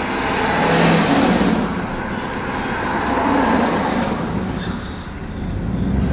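Road traffic passing outside, heard from inside a pickup truck's cab. The rushing vehicle noise swells about a second in, again after about three seconds, and eases off near the end.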